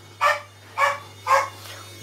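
A dog barking three times in quick succession, about half a second apart.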